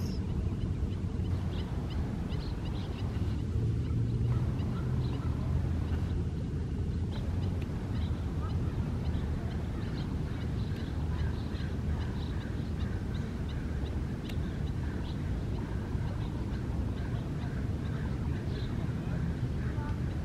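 Faint, scattered short calls of Canada geese on the water over a steady low rumble.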